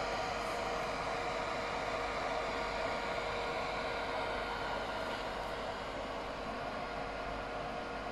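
Steady whoosh of cooling fans on a running GPU mining rig, among them a Bitmain APW7 1800 W power supply modified to run quietly under one large, slow fan. A few faint steady tones sit under the even air noise.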